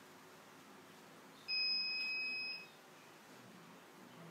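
A single steady, high-pitched electronic beep lasting just over a second, over faint room tone.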